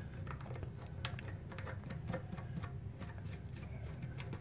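Faint, irregular small clicks of a plastic nut being threaded by hand onto the shank of a toilet fill valve under the tank.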